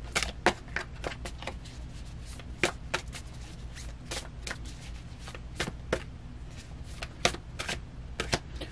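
Tarot deck being shuffled by hand, overhand style: cards slapping against each other in irregular sharp snaps, a few each second, over a steady low hum.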